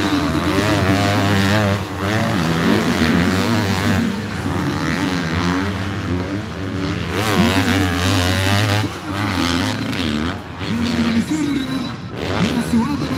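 Motocross bikes racing through a corner, their engines revving up and down as the riders brake and accelerate out of the turn.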